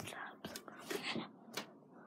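A person's voice whispering or breathing close to a phone's microphone in short breathy bursts, with a brief rub of handling noise about one and a half seconds in.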